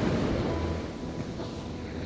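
Surf washing up the sand as a small ocean wave breaks and runs in, with wind on the microphone; the wash eases off after about half a second.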